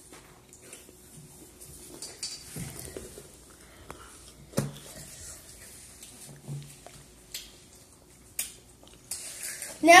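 Light handling noises at a table: scattered sharp clicks and taps of plastic snack trays and cups, the loudest about halfway through, with faint murmuring.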